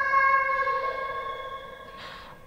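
A single held musical tone, steady in pitch with several overtones, starting suddenly and slowly fading away.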